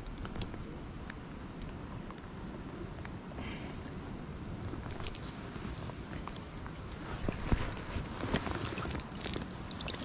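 Flowing creek water and wind on the microphone, a steady rushing hiss. From about seven seconds in come splashes and small knocks as a rainbow trout moves in a landing net and is handled in the water.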